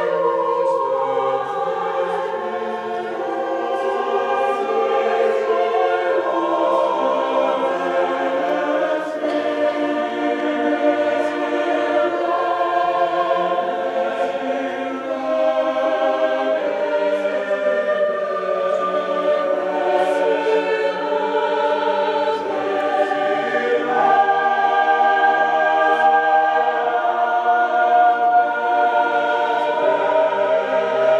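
Mixed university choir of men's and women's voices singing in parts, holding long sustained chords. The choir swells louder about three quarters of the way through.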